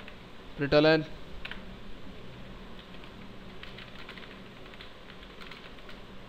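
A short spoken word just under a second in, then scattered light keystrokes on a computer keyboard, typing at an irregular pace.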